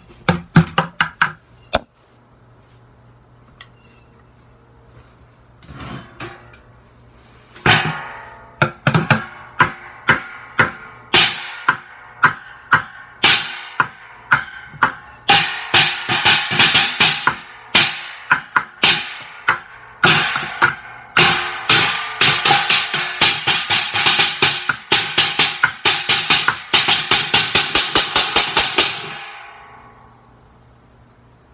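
Drumsticks beating on upturned buckets and an upturned stainless steel dog bowl. A few quick hits, a lull of several seconds, then a steady drumming groove with ringing metallic hits. It ends in a fast roll that stops suddenly near the end.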